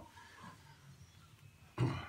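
Mostly quiet room, then one short, loud cough from a man near the end.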